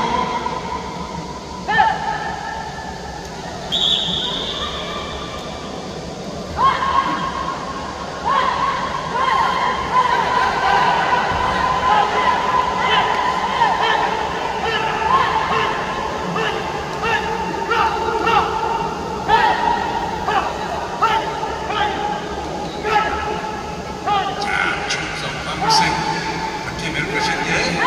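A voice over the arena's loudspeakers, calling in long, drawn-out notes that each start with a short rise in pitch and are held for several seconds, again and again.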